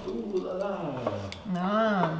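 A person's voice talking, with a few faint clicks behind it.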